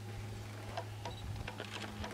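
A low steady hum with a scatter of light clicks and taps, thickening in the second half.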